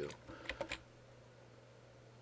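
A few computer keyboard keystrokes about half a second in, then only a faint steady low hum.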